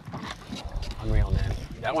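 A person's voice, the words not clear, over a low rumble, then a man starting to speak near the end.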